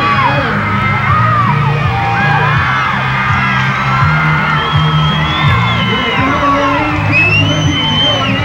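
Music with a steady, repeating bass line, with a crowd shouting and whooping over it as a BMX freestyle rider performs on a ramp.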